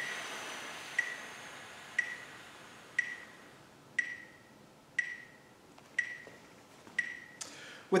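A metronome ticks once a second with a short, high beep, keeping the counts of a breathing exercise. Over the first few seconds a long exhaled breath hisses out and fades as the lungs empty over four counts. A quick breath in comes just before the end.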